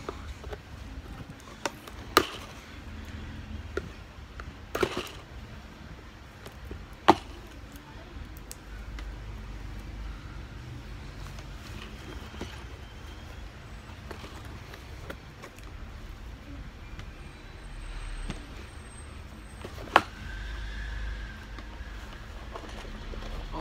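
Cardboard boxes of building-block toy sets being handled and set down on a floor, with a few sharp knocks about two, five and seven seconds in and again near the end, and faint rustling between.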